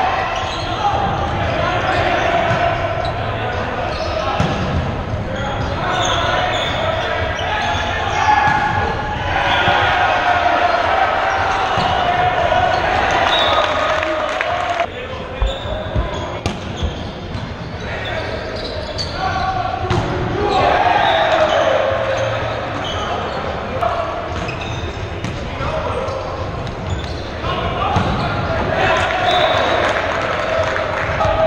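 Echoing gymnasium din during men's volleyball play: indistinct shouts and chatter from players on several courts, with volleyballs being struck and bouncing on the hardwood floor. A serve is hit about halfway through.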